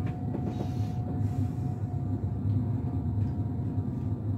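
Steady low rumble of a VR intercity passenger train running on the rails, heard inside the carriage, with a faint steady high hum that stops near the end.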